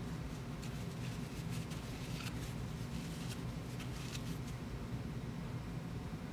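Short scratchy rustles of an aluminium lathe part being wiped and turned in the hands, several of them in the first four and a half seconds, over a steady low hum.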